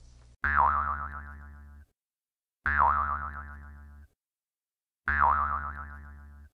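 Cartoon 'boing' spring sound effect, repeated three times about two and a half seconds apart for a bounce on a trampoline. Each is a twang that dips in pitch, then wobbles and fades.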